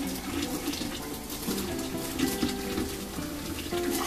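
A thin stream of hot water pours steadily from a stainless steel kettle into a chimarrão gourd held over a metal sink, scalding the gourd before the mate is made. Background music plays underneath.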